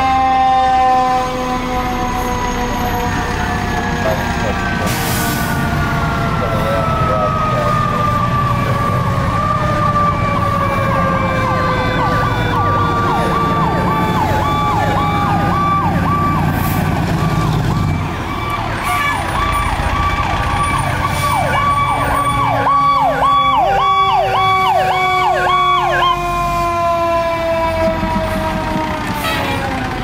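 Fire truck sirens. One siren winds down in a long, slowly falling tone, while another runs a fast up-and-down yelp from about nine seconds in until about twenty-six seconds in, over the rumble of heavy diesel engines.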